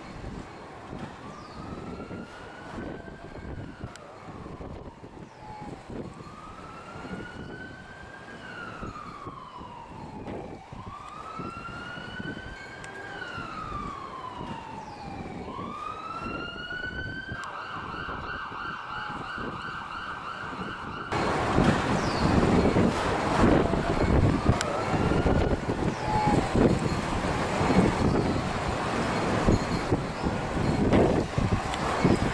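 Emergency vehicle siren wailing: a slow rise and fall repeating about every four seconds, switching to a fast yelp a little past halfway. A few seconds later a louder rushing noise suddenly takes over, with the siren faint beneath it.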